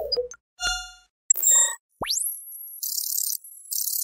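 Electronic logo sting: a single chime ding, then a brighter multi-note chime, followed by a steeply rising synthetic sweep and two passes of high hissing shimmer.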